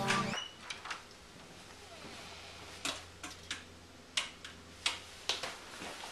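Guitar music cuts off just after the start. Then comes a quiet room with a string of sharp clicks and light knocks at uneven spacing, about one every half second in the second half.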